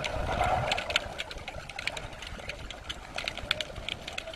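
Underwater sound picked up by a submerged camera: a dense, irregular crackle of sharp clicks over a low rumble.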